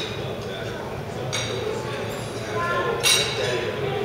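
Indistinct background chatter in a large room, with tableware clinking: one sharp ringing clink about a third of the way in and a louder one near three-quarters through.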